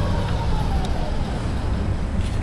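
Automated guided vehicle's electric drive running as it pulls away: a low rumble with a faint whine that fades out about a second in.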